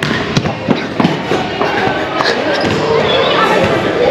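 Basketballs bouncing on a gym floor, with several sharp bounces in the first second, amid background chatter.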